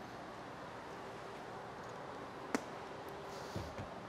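Travel-trailer outdoor kitchen being closed up: a quiet background, one sharp click about two and a half seconds in, then a faint rustle and a soft low thump near the end as the exterior hatch comes down shut.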